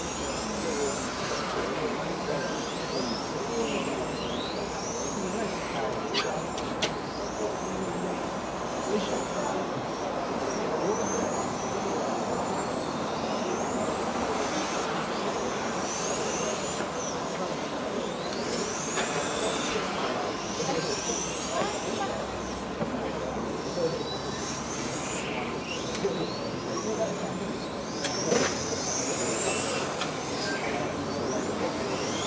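Electric RC touring cars' 17.5-turn brushless motors whining around the track, many high whines rising and falling in pitch as the cars accelerate and brake, over a steady background noise with a thin steady tone.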